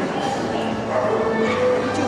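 A small dog barking in short yaps over the steady chatter of a crowd.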